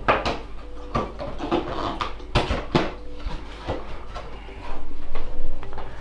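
Cardboard packaging being handled: a box slid out of its sleeve and the inner lid lifted open, with scrapes, rubs and small knocks, loudest about five seconds in.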